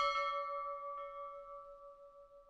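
A bell sound effect: a single struck bell ringing and slowly fading, with a lighter second strike about a second in.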